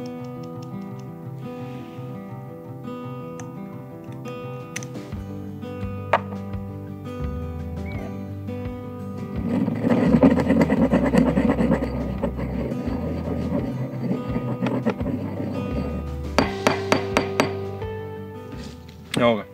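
Pestle grinding dry spices (salt, paprika, pepper, coriander) in a stone mortar, a gritty scraping that starts about halfway through and runs for several seconds, over steady background music. Near the end there are a few sharp clinks.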